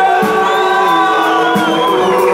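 Live reggae band playing loud music: held keyboard chords over drums, with the crowd's voices underneath.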